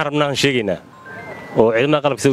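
A man's voice speaking in two short phrases with a brief pause between them: speech only.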